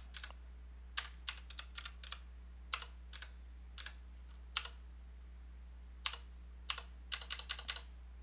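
Computer keyboard keystrokes: scattered single key presses and short pairs, then a quick run of several keys near the end.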